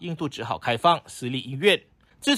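A narrator's voice speaking, with a brief pause near the end.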